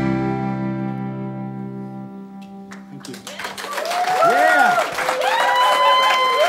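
The band's final chord on accordion, guitars and upright bass rings out and fades away. About three seconds in, the audience breaks into applause, cheers and whoops.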